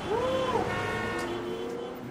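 Sound-designed logo sting: a pitched tone with overtones swoops up, holds, and bends down about half a second in, then settles into a steadier, lower tone that fades toward the end.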